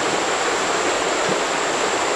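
Steady rush of a shallow, rocky mountain creek, its water running over stones and riffles.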